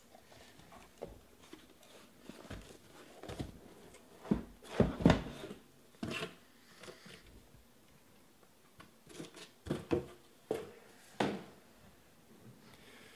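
Sealed hobby boxes being slid out of a cardboard shipping case and set down on a table: irregular scrapes, rustles and knocks, the loudest about five seconds in and another cluster near the end.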